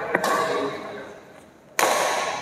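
Badminton racket striking a shuttlecock twice, about one and a half seconds apart. Each hit is a sharp crack that echoes in the hall, and the second is the louder.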